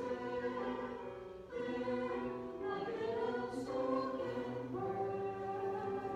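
A choir singing slowly, holding each chord for a second or two, with a brief dip about one and a half seconds in before the next phrase.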